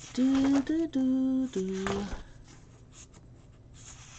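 A woman humming a short tune of four held notes, the last one lower, lasting about two seconds. Faint paper handling follows as planner pages are turned.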